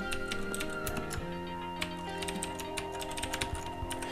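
Computer keyboard typing: a run of quick keystroke clicks, over soft background music with held tones.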